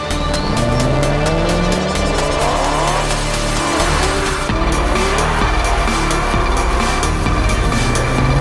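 Dubbed race-car sound effects: engines revving in several rising sweeps over the first few seconds, with tyre squeal as the cars corner, over electronic background music with a steady beat.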